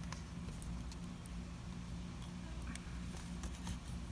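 Faint scattered taps and clicks of plastic paint cups and a wooden craft stick being handled while acrylic paint is poured, over a low steady hum.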